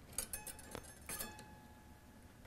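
Faint clicks and ticks of a steel guitar string being bent and handled at the tuning peg of a Martin acoustic guitar during restringing. The string rings faintly for about a second as it is worked.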